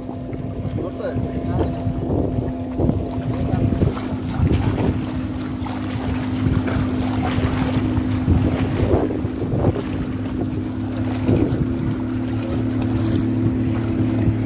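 A motorboat engine drones steadily on the water, its note changing slightly about four seconds in, with wind on the microphone.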